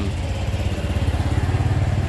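Small motorcycle engine running close by, a steady low rumble with a fast even pulse.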